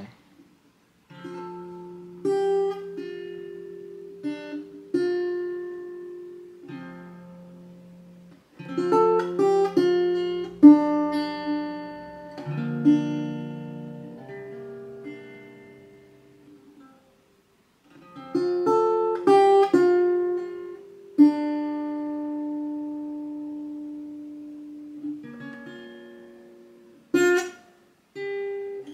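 Acoustic guitar with a capo at the third fret, played solo and improvised: picked notes and chords left to ring and die away, in phrases broken by two short pauses, one about eight seconds in and a longer one from about fifteen to eighteen seconds.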